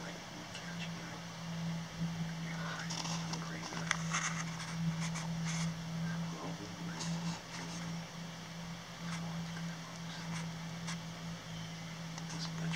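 A steady low hum runs throughout, with hushed whispering over it, mostly in the middle of the stretch.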